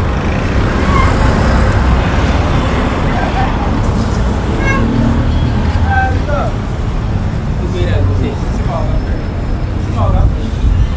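Steady street traffic noise with a low rumble, with brief snatches of voices in the background.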